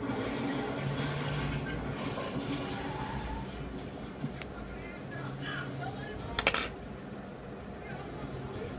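Scissors snipping through a strip of Japanese wicking cotton, a short crisp cut about three-quarters of the way through, with a smaller click about halfway. Soft background music runs underneath.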